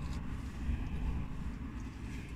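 Low, steady vehicle rumble heard from inside a car's cabin.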